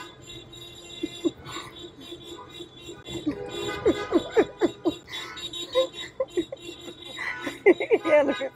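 People laughing in bursts, loudest a few seconds in and again near the end, over music playing in the background.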